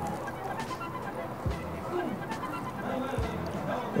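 Quiet background music with faint indistinct crowd chatter, and a couple of soft low thumps.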